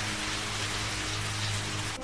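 Shower head spraying water, a steady hiss of falling water with a faint low hum beneath.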